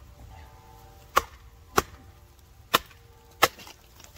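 A wooden baton striking the spine of a Bowie knife (Timber Wolf TW1186) wedged in a log, driving it down to split the wood: four sharp knocks, each between a half and one second apart.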